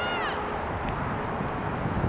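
Open-air soccer field sound: a steady low rumble, with a brief high-pitched shout that rises and falls right at the start and a couple of faint knocks about a second in.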